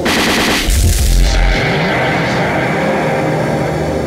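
Experimental electronic music: two rapid rattling bursts of clicks over heavy bass in the first second and a half, then a held droning chord of several steady tones.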